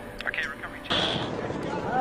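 A fighter jet roaring overhead, heard as a steady rushing noise that sets in suddenly about a second in, with brief snatches of voice over it.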